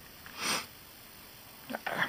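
A single short sniff, about half a second in, over faint room noise.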